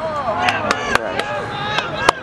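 Lacrosse sticks clacking against each other in checks, about five sharp clacks spread across two seconds, with players' shouts from the field.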